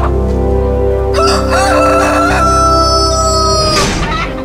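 A rooster crows once. It is a long cock-a-doodle-doo starting about a second in, wavering at first and then held on one high note, and it is cut off near the end by a sharp knock.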